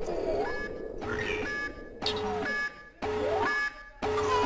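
Synthesized intro sound effects: a rising electronic sweep followed by short steady beeps, repeating about once a second.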